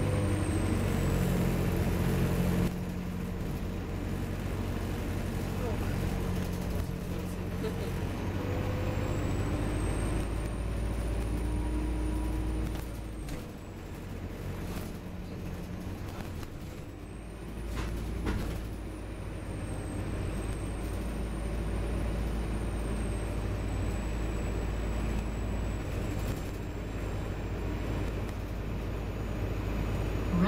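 Inside an Optare Versa single-deck bus on the move: steady low engine rumble and road noise. It eases off for a few seconds around the middle, then picks up again.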